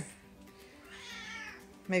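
Domestic cat giving one drawn-out meow, lasting about a second and rising then falling in pitch, in protest at being picked up and wrapped in a blanket.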